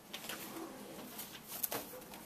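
Sheets of paper rustling and crinkling as they are handled and leafed through, in a series of short, irregular rustles with a sharper crackle of paper about one and a half seconds in.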